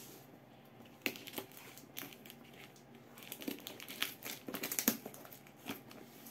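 Brown plastic packing tape on a cardboard box crinkling and crackling as it is cut and pulled away by hand: a few sharp crackles early, then a busier run of crinkling from about three seconds in.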